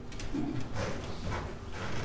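Footsteps on a hard floor: a few short, uneven knocks as a person walks away from a lectern.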